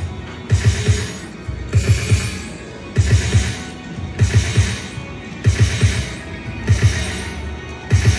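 Video slot machine's game music looping: a cluster of three or four low, drum-like thumps comes round about every 1.2 seconds, with a brighter chime-like wash over each.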